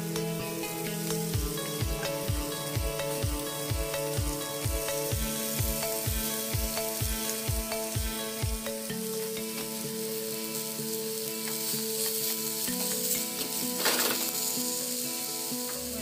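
Sliced red onion and red bell pepper sizzling in hot oil in a stainless steel pan. Background music with sustained chords runs underneath, with a steady low beat in the first half.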